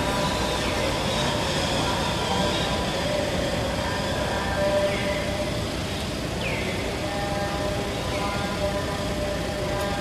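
Steady outdoor background noise, with several short high chirps that fall in pitch.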